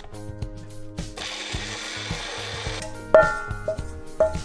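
Personal bullet-style blender whirring for under two seconds, starting about a second in, as it blends the mousse mixture. Background music plays throughout, with a louder note coming in near the end.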